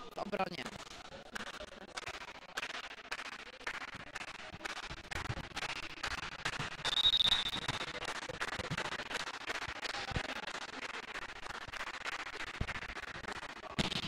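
Volleyball-hall sound: a steady run of sharp claps and knocks echoing in the gym, with a short referee's whistle blast about seven seconds in. A hard hand-on-ball hit comes at the very end as the ball is served.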